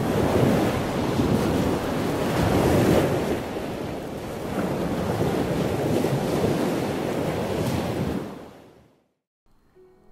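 Sea waves washing in with wind, a steady wash of noise that swells and ebbs, then fades out near the end.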